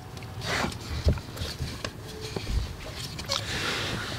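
Quiet handling sounds of a hand pulling at the rubber pad on a car's accelerator pedal: soft rubbing with a few light knocks. The pad stays on.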